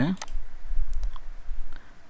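A few faint computer mouse clicks over a low rumble, after a word of speech at the start.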